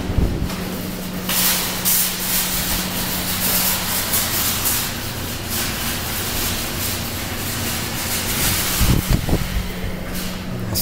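Rustling and rubbing noise, as of paper money and the recording device being handled while a dollar bill is fed into a claw machine's bill slot. It starts about a second in and runs most of the way, with a few low knocks near the end. A steady low electrical hum sits underneath.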